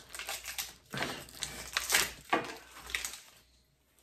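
Paper and plastic packaging from a gingerbread house kit crinkling and rustling in short, irregular bursts, mixed with breathy laughter; it dies down in the last second.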